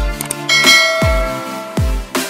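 Electronic background music with a steady, deep kick-drum beat. About half a second in comes a click and a bright bell-like chime that rings on: the sound effect of an on-screen subscribe-button animation.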